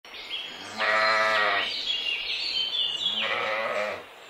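A sheep bleating twice, each bleat under a second long and about two seconds apart.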